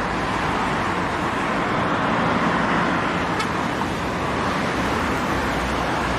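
Steady outdoor background noise: an even, continuous rush with a low rumble underneath and no distinct events.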